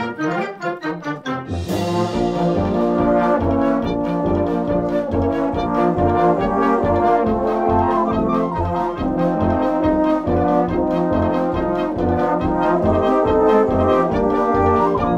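Youth concert band playing, with brass to the fore. After a short quieter passage of short repeated notes, a crash about two seconds in brings in a steady beat, with bass notes about twice a second under sustained brass chords.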